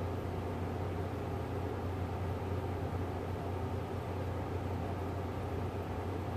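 Steady low hum with an even hiss, unchanging and with no distinct knocks or clicks.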